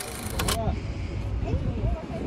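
A burst of hiss that cuts off sharply about half a second in, then wind rumbling on the microphone under indistinct voices of people nearby.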